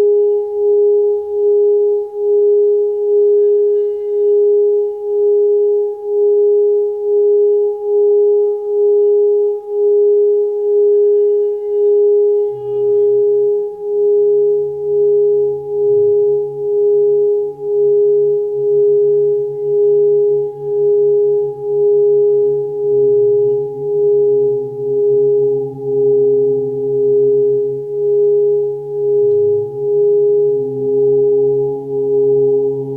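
A steady pure meditation drone tone a little above 400 Hz, swelling and fading about once a second, with a fainter tone an octave above. About twelve seconds in, lower humming tones come in beneath it and hold.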